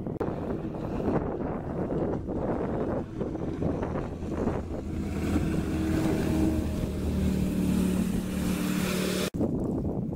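Jet boat running on the river, with the rush of its Berkeley jet pump and water louder than the engine, and wind buffeting the microphone. About halfway through the boat is closer and a steady engine hum with a hiss of water comes up, then it stops abruptly near the end.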